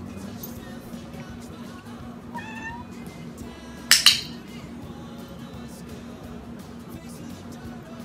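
A cat meows once, briefly, rising in pitch, about two and a half seconds in. About a second and a half later comes a single sharp click of a training clicker, marking the behaviour for the reward.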